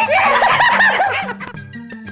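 Several men laughing heartily together over background music; the laughter fades out about a second and a half in.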